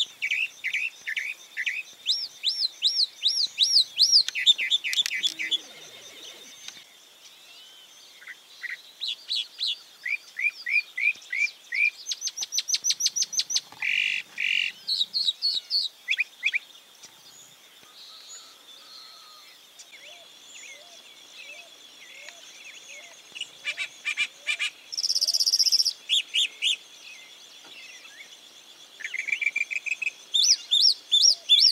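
A mockingbird singing a varied song. Each phrase is a quick run of the same note repeated four to eight times, and the note changes from phrase to phrase, with short pauses in between. A faint steady high tone runs underneath.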